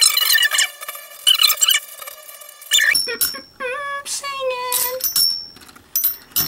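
Metal Beyblade tops spinning against each other in a clear plastic stadium: a high ringing whine that slowly falls in pitch, broken by sharp clicks as the tops clash. In the second half the whine wavers and dips in pitch, as a top wobbles hard while it loses spin.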